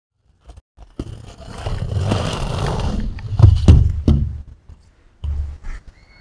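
Wind and handling noise on an action camera's microphone: a rough rumbling hiss with three heavy knocks in quick succession about halfway through, then a short low rumble near the end.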